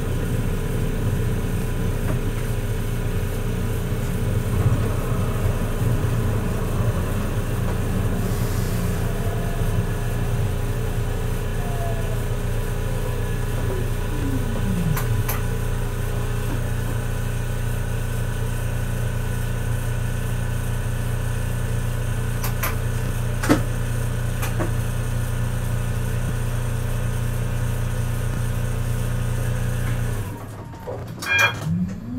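Siemens Avenio tram heard from the driver's cab: a steady electric hum with several held tones. Its drive whine falls in pitch a little before halfway as the tram brakes to a stop, then the standing tram keeps humming, with a few sharp clicks.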